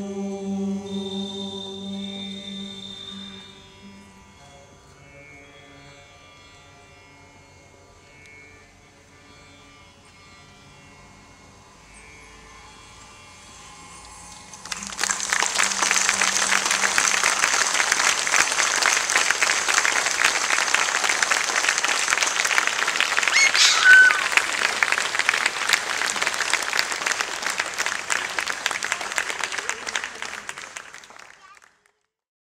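The last held notes of the music and its drone fade out, leaving a quiet pause. About halfway through, audience applause breaks out suddenly and carries on loudly and steadily, with one short sharp sound standing out partway through.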